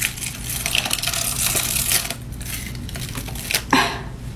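Latex-and-toilet-paper prosthetic being peeled off the skin at the chin: a sticky, crackling tearing.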